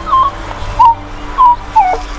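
Minelab E-Trac metal detector in all-metal mode giving four short, squeaky chirps as the coil is swept: each squeak is an iron target in the ground.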